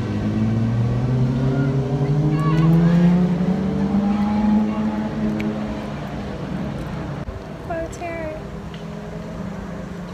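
A motor hum rising steadily in pitch over the first few seconds, then holding at a steady pitch. A few short high chirps sound over it.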